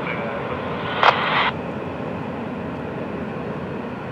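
Long double-stack intermodal freight train rolling past with a steady rumble of wheels on rail, and a brief louder hiss about a second in.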